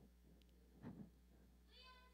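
Near silence: room tone, with a faint short sound about a second in and a faint high-pitched child's voice calling out an answer near the end.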